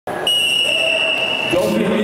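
Referee's whistle blown once: one steady high note lasting about a second, signalling the start of a wrestling bout. Voices in the hall follow as it stops.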